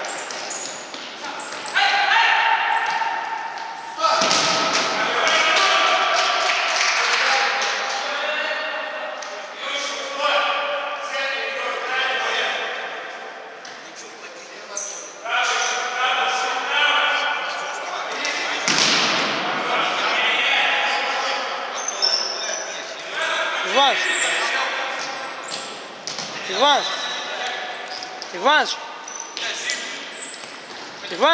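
Indoor futsal being played on a wooden gym floor: players' voices echo through the large hall, with thuds of the ball being kicked and bouncing. Several short squeaks come near the end, the sound of shoes on the wooden floor.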